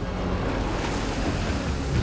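Sea water rushing and splashing as a remotely operated vehicle is lowered from a ship's side into rough sea, over a low rumble.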